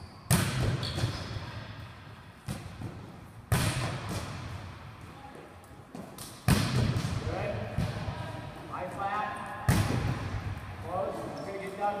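Volleyballs being spiked in a large gym hall, each hit a sharp, echoing smack: four loud ones about three seconds apart and a lighter one between the first two.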